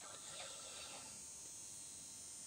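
Near silence: faint room tone with a steady high-pitched hiss.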